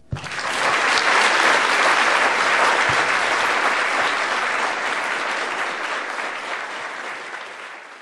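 Audience applauding: it breaks out suddenly, builds within the first second and slowly dies away.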